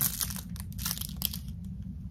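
Clear plastic wrapping on makeup brushes crinkling as it is handled, a scatter of soft, irregular crackles.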